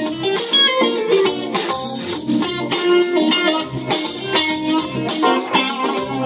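Live band playing an instrumental passage with electric guitar, electric keyboard and drum kit.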